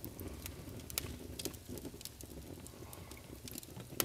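Quiet room tone with a few faint, scattered clicks and light handling noise.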